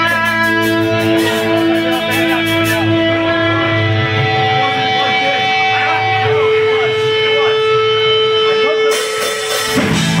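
Live melodic hardcore band playing a song intro: distorted electric guitars hold long sustained notes that shift pitch every few seconds, with a fast high ticking over the first few seconds. The held notes break off just before the end, and the full band comes in.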